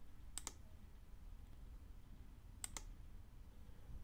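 Two computer mouse clicks, about two seconds apart, each a quick double tick of the button pressing and releasing, over a faint low hum.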